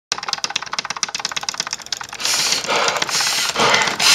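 Laptop keyboard keys tapped very rapidly, a fast run of clicks for about two seconds. After that come three louder rushes of noise, each lasting under half a second.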